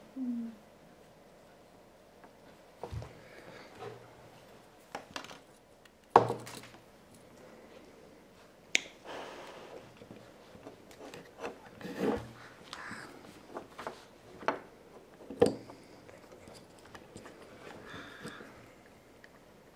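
Scattered light clicks, taps and rubbing from wire and a soldering iron being handled against a plastic transformer case on a wooden table, with a sharper knock about six seconds in.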